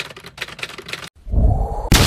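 Typewriter-style typing sound effect, a quick run of clicks. About a second in, a loud low rumbling noise with a rising whine starts and builds into a sudden loud burst near the end.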